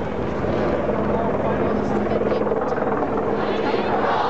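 Helicopter running nearby: a steady rotor chop with a steady hum, strongest through the middle, over the voices of a large crowd.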